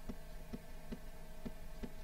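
Five short, sharp computer clicks, about one every half second, stepping a chess game forward move by move, over a faint steady electrical hum.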